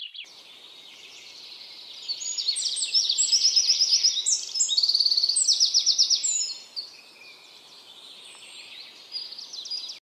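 Songbirds chirping in quick repeated trills over a steady outdoor hiss, busiest and loudest between about two and six and a half seconds in.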